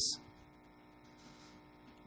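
Faint, steady electrical mains hum in a pause between spoken phrases. The end of a word is cut off at the very start, and there is a brief, faint hiss a little past the middle.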